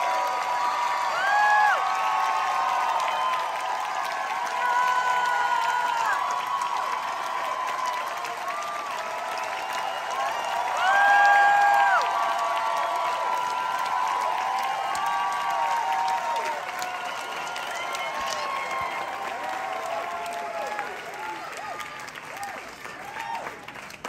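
Theatre audience applauding and cheering, with many long high screams and whoops over the clapping. It is loudest about a second in and again near the middle, and tails off toward the end.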